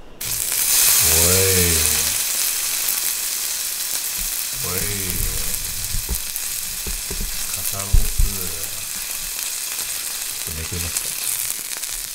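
A slice of Sendai wagyu shoulder loin sizzling on a hot electric grill plate. The sizzle starts suddenly as the meat is laid down, is loudest in the first couple of seconds, then settles to a steady sizzle, with a sharp tap about eight seconds in.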